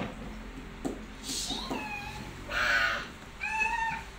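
Young children's high-pitched squeals and breathy giggles as they play, with two drawn-out squealing cries, one in the middle and one near the end.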